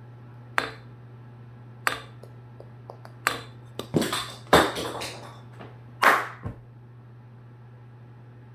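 A cockatoo's beak clicking and smacking as it chews a piece of banana: about seven sharp clicks, bunched most closely in the middle, over a steady low hum.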